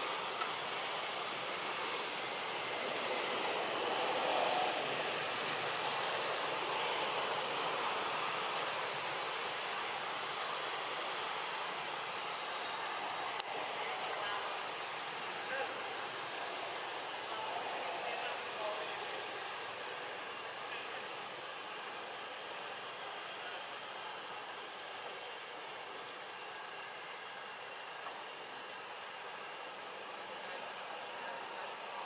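Steady outdoor background noise: an even rushing hiss with faint high steady tones, swelling slightly early on and slowly fading, broken by a single sharp click about thirteen seconds in.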